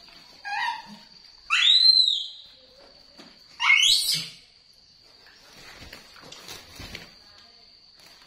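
Baby monkey giving three high-pitched calls, the second and loudest rising and falling in a short arch, the third sweeping upward. Faint taps and rustles follow, over a thin steady high whine.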